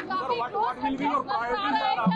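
Speech only: several voices talking over one another in a press scrum.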